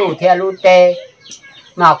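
A man speaking, with a short pause just past the middle.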